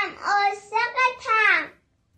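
A young girl's high voice singing a short phrase in a few held, gliding notes, breaking off near the end.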